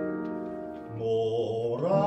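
Live classical art song: piano chords sustaining and fading, then a baritone voice comes in about halfway with a low held note that slides upward near the end into the next sung phrase.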